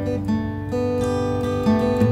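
Acoustic guitar playing a picked chord pattern, single notes plucked one after another and left ringing over each other, a new note entering every half second or so.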